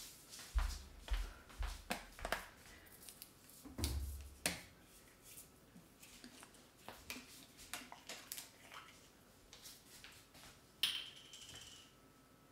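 Thin plastic water bottle being handled: irregular crinkles and clicks of the plastic, with a few dull knocks in the first half and a sharper crackle about a second before the end.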